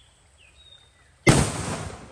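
A homemade firecracker bundle wrapped in cash-register receipt paper (mercon buntelan) explodes with a single loud bang about a second in, and the blast dies away over the next half second or so.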